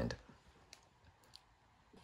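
Quiet room tone with a couple of faint, short clicks, about half a second apart, in the middle.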